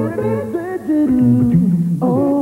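A sitcom's closing theme song: a group of voices singing wordless "doo" syllables in harmony over a low bass voice, in short held notes that step up and down.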